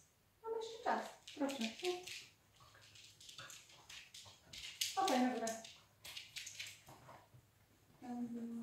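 A small dog sniffing in quick, repeated bursts while searching for a scent. Two short, high-pitched vocal sounds that slide down in pitch come about a second in and about five seconds in.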